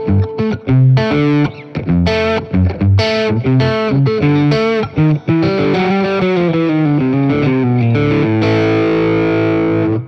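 Overdriven electric guitar on its bridge and middle single-coil pickups (Lindy Fralin Vintage Hots), driven through an Exotic Effects AC Plus overdrive. It plays a phrase of picked notes and chords, then holds a final chord that rings for about the last two seconds and stops at the end.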